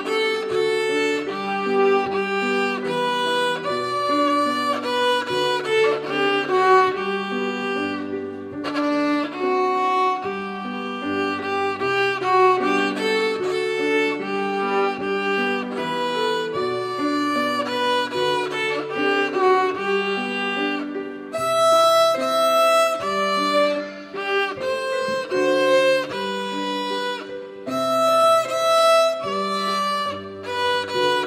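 Violin played with grand piano accompaniment: a melody of held bowed notes over changing piano chords.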